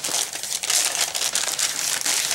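Brown paper envelope crinkling and rustling, a continuous run of small crackles, as it is handled and opened.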